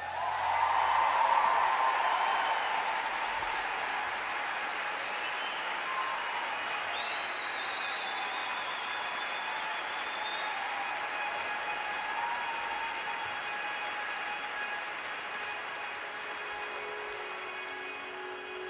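Concert audience applauding after a song ends. The applause starts suddenly, is loudest in the first two seconds, then continues steadily.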